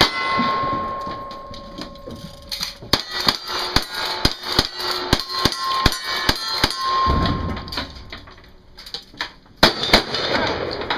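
Rapid gunfire in a cowboy action shooting stage, each hit followed by the ring of a steel target. A shot comes right at the start, then a fast string of about a dozen shots, roughly three a second, then a pause and one more shot near the end.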